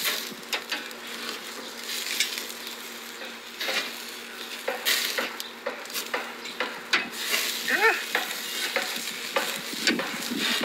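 Sausages and asparagus sizzling on a barbecue grill, with repeated sharp clicks and knocks of a utensil as the food is turned. A brief squeak comes about eight seconds in.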